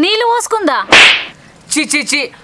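A single loud, sharp crack about a second in, set between bursts of angry shouted speech.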